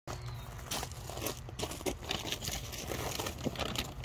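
Plastic bag crinkling and rustling on and off as it is handled, with a steady low rumble underneath.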